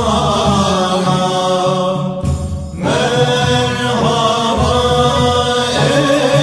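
Turkish Sufi naat, a devotional hymn to the Prophet in makam Hüzzam, chanted by male voices in long, ornamented held notes. One phrase ends about two seconds in, and the next begins after a short pause.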